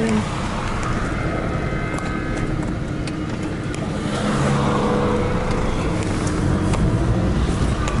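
Car engine and road noise heard from inside the cabin as the car drives slowly along a street, getting a little louder about halfway through.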